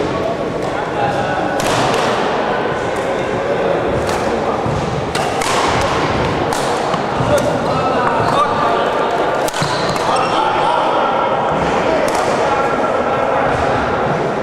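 Badminton rackets striking a shuttlecock: several sharp, irregularly spaced clicks over the chatter of voices, all echoing in a large sports hall.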